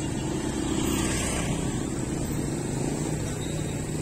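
Street traffic noise with a motor vehicle engine running steadily and a low, unchanging hum.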